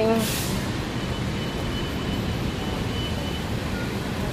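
Steady rumble of street traffic, with a short hiss just after the start and a faint, thin high whine lasting a couple of seconds in the middle.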